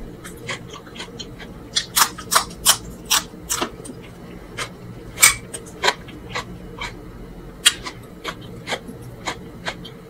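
Close-miked wet chewing of a handful of mansaf (rice and meat in jameed yogurt sauce): a run of sharp mouth clicks and lip smacks, thickest a couple of seconds in and scattered after that, over a faint steady hum.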